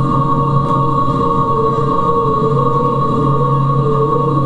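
Music made of a steady drone of several long held tones, with one middle tone wavering slowly up and down in pitch.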